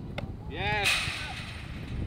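A short knock, then a woman's voice giving one shouted call that rises and falls in pitch, over low wind rumble on the microphone.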